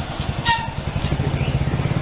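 A vehicle engine running nearby, a steady low throb with a fast, even pulse. A brief sharp click comes about half a second in.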